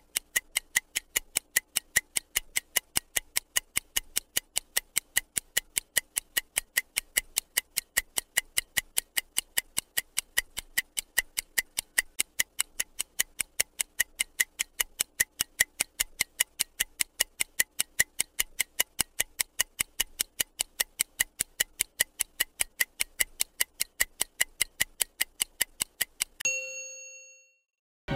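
Stopwatch ticking sound effect: a long run of rapid, evenly spaced ticks counting down the answer time. Near the end the ticking stops and a single chime rings out and fades, marking that the time is up.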